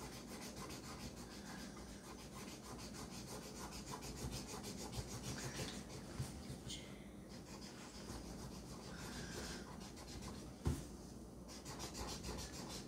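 Felt-tip marker scribbling on paper in rapid back-and-forth strokes as a drawing is coloured in, with a single knock near the end.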